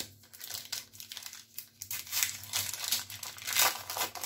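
Crinkling of a trading card pack's foil wrapper as it is handled and torn open, with louder crackles about two seconds in and near the end.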